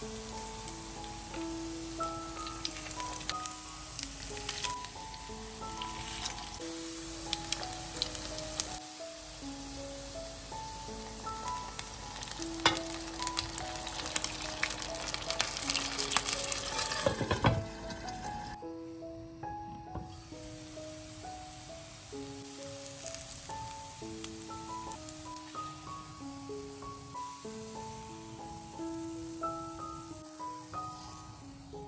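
Lentil-and-potato patties sizzling in hot oil in a frying pan, a steady hiss with sharp crackles and pops that grows louder around 16 seconds in, then drops away about 18 seconds in. Soft melodic background music plays throughout.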